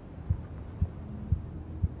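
Low, heartbeat-like thumps in a film score, about two a second, over a faint hum.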